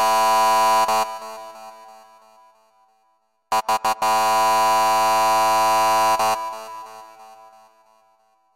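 Synthesized buzzing, ring-like tone in a phone-call pattern. A held note from the previous ring cuts off about a second in and dies away. After a short silence, four quick stutters lead into a second held note of about three seconds, which cuts off and fades out.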